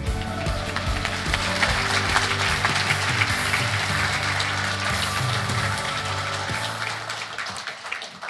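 Audience applauding, with closing background music underneath that stops near the end; the applause fades out soon after.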